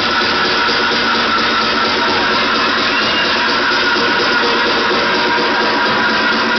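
Loud, steady electronic dance music from a live DJ set playing over a nightclub sound system.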